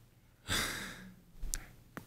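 A person's audible breath into a close microphone. It starts suddenly about half a second in and fades away, and a short click (a lip or mouth click) follows shortly before speech resumes.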